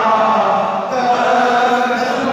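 A man chanting a devotional tarana unaccompanied into a microphone, in long held notes.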